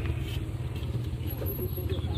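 A steady low engine hum, like a motor vehicle running close by.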